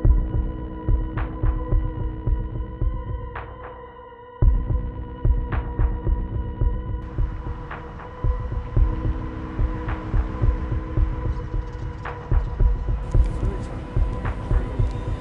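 Low, irregular throbbing thumps like a heartbeat, under a steady hum, with a few faint clicks; the throbbing drops away briefly about four seconds in and then returns.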